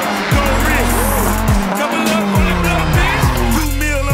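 Turbocharged Nissan S13 drifting, its tyres squealing and engine running, mixed under a hip-hop beat with deep falling bass notes.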